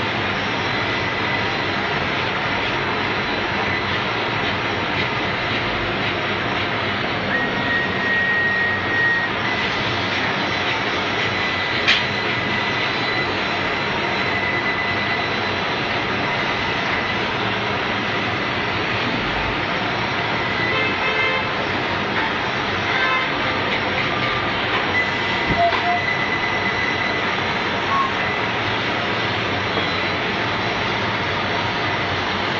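Laser cutting machine and its feeding equipment running: a steady, loud machine noise with a faint high whine that comes and goes, and a single sharp click about twelve seconds in.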